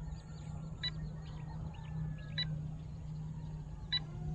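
Open-field ambience: a steady low hum with faint bird chirps, and a short high pip that repeats about every second and a half.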